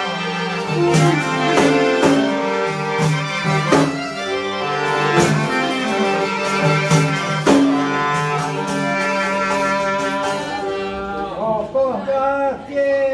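Albanian saze folk ensemble playing: a clarinet melody over accordion, punctuated by strikes on a def frame drum. Near the end the clarinet drops out and a voice starts singing.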